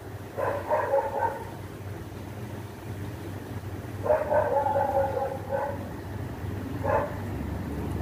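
An animal whining in the background: a drawn-out whine about half a second in, a longer one about four seconds in, and a short one near the end, over a steady low hum.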